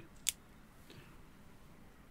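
A single sharp click about a quarter of a second in, then faint room tone.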